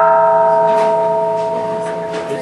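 A struck metal bell ringing on after a single strike, several clear tones sounding together and slowly fading.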